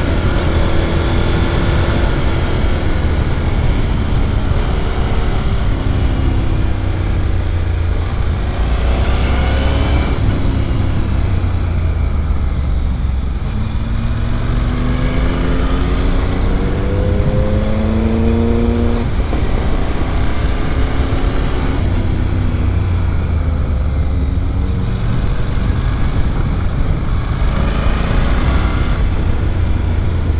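Honda NC 750X parallel-twin engine under way, its note climbing in long sweeps and dropping back several times as the rider accelerates and changes gear, over a heavy, steady wind rumble on the microphone.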